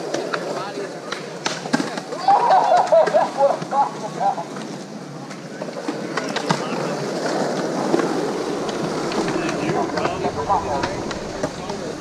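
Skateboard wheels rolling on concrete, with sharp clacks of the board; the rolling builds into a steady rumble from about halfway through as a skater rides across the flat toward the pyramid.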